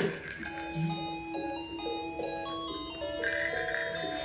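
Electronic melody from a baby walker's toy activity tray: a simple tune of plain, steady beeping notes that starts about half a second in.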